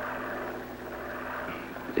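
Steady drone of an aircraft engine, an even hum with a haze of noise that holds without change.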